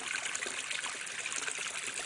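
Drain water from the aquaponic grow beds running out of a four-inch corrugated drain pipe into a pond, a steady trickling splash on the water surface.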